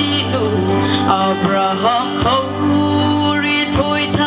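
A woman singing a song into a handheld microphone over instrumental accompaniment with guitar and a steady bass line.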